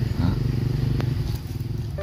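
A steady low rumble, with a short vocal sound just after the start and a single click about a second in.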